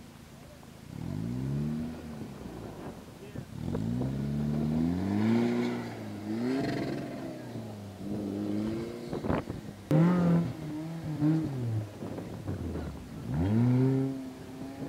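Off-road 4x4's engine revving up and down in about six separate bursts, with a couple of sharp knocks around the middle.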